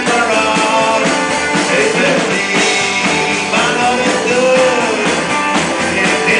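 A live roots rock-and-roll band plays: electric guitar and a drum kit, with a man singing.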